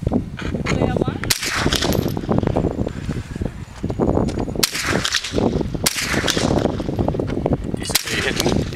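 Steady wind rumble on the microphone, with three sharp cracks about one, four and a half and six seconds in: shots fired at targets.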